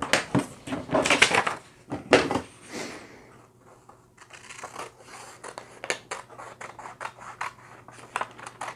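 Paper handled and rustled for a couple of seconds, then scissors cutting through folded paper in a quick run of short snips.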